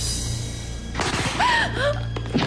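Dramatic film score drone. About a second in there is a sudden rush of noise, then a woman's short, sharp cries, rising and falling in pitch.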